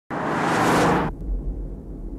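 A car speeding along a wet street: loud tyre hiss and engine rush that cut off suddenly about a second in. This gives way to a low, steady engine rumble heard from inside the car.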